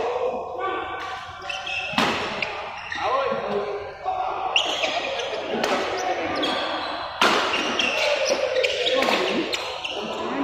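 Badminton rackets striking a shuttlecock in a doubles rally: several sharp hits a second or two apart, echoing in a large sports hall, with voices talking underneath.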